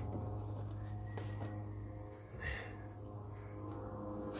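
A steady low hum with several faint metallic clicks as an Allen wrench touches the metal trailer hub.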